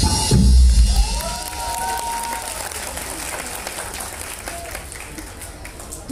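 A live band's song ends with a last loud hit of drums and bass about a second in. The audience then applauds, with a voice or cheer rising briefly over it, and the clapping gradually fades.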